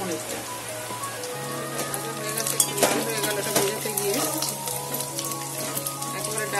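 Paneer cubes sizzling and crackling in hot oil in a metal kadai. Background music with held tones plays over it.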